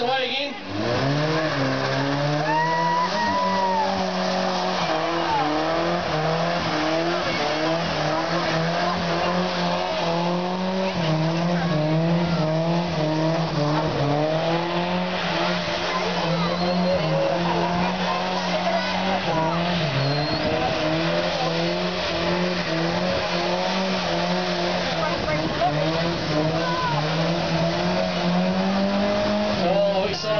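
Ford Escort doing a burnout in circles: the engine is held high in the revs, its pitch wavering up and down, while the tyres spin and squeal without a break.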